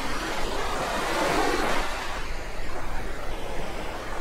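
Ocean surf: waves breaking and washing up a sandy beach, a rush of noise that swells over the first two seconds and then eases.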